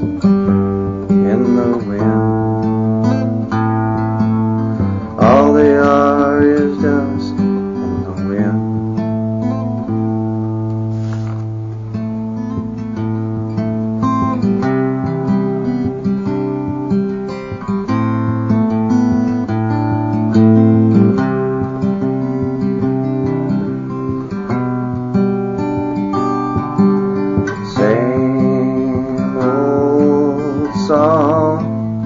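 Acoustic guitar music from a live song performance, a stretch of guitar playing with no words sung.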